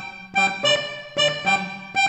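Major-minor organetto (diatonic button accordion) playing a short practice phrase of about five short, detached notes on the right-hand buttons, repeated as a drill.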